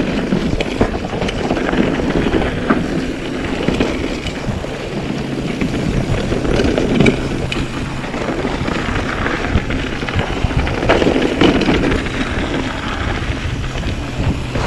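Mountain bike ridden fast down a dirt forest trail: a steady rumble of the tyres on dirt with frequent rattles and knocks from the bike over roots and rocks, and wind buffeting the microphone.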